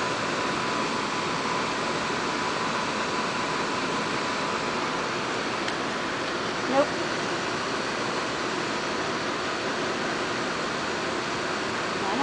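Steady, even rushing background noise, with one short pitched sound about seven seconds in.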